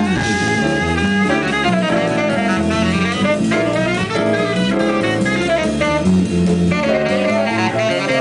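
Live rock band playing an instrumental passage: a saxophone lead over electric guitar, bass guitar and drums, steady and loud throughout.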